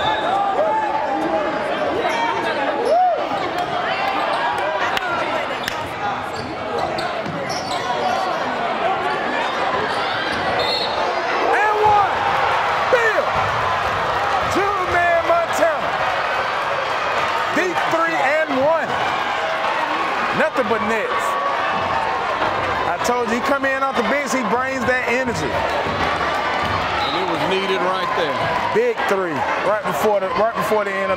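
A basketball bouncing on a hardwood gym floor in sharp knocks, over the steady chatter and shouts of a crowd in a large gym.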